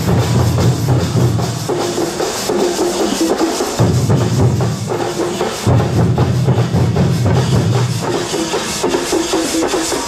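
Loud drum-driven percussion music with a deep bass line that cuts in and out every couple of seconds, over a steady rhythmic beat.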